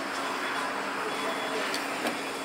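Steady street traffic noise with a continuous low engine hum, and a short laugh at the start.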